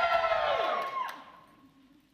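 Audience calling back with a high, drawn-out whoop that bends up and down, fading out about a second and a half in.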